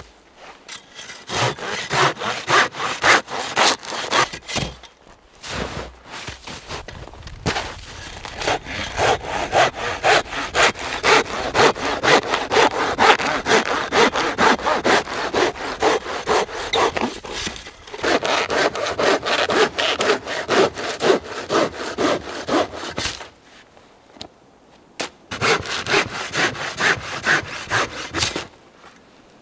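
A hand saw cutting through a conifer log in quick, even back-and-forth strokes. The strokes pause briefly about five seconds in, stop for a couple of seconds near the end, then start again.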